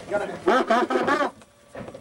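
Voices talking and calling out at ringside for about a second, then a short lull.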